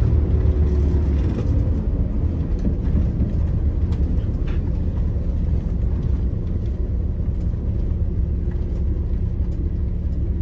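MCI MC-5B coach's diesel engine and road noise heard from inside the cab while driving: a steady low rumble, with the engine note falling slightly at the start.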